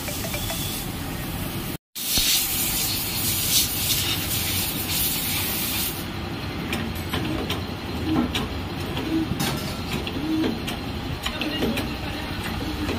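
Hydraulic press running with a steady hissing noise as the ram presses down on a suspension bush. There is a brief break about two seconds in, and the high part of the hiss drops away about six seconds in.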